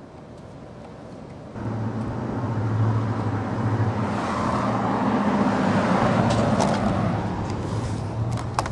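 A motor vehicle's engine running close by with a steady low hum. It comes in suddenly about one and a half seconds in, grows louder, then eases off near the end.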